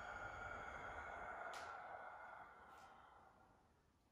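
A faint ringing tone with several overtones, held steady and then slowly fading away by about three seconds in.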